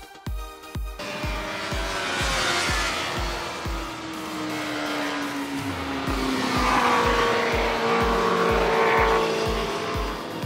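Sport motorcycles running past on a race circuit, their engine note falling in pitch as they go by, over background music with a steady beat.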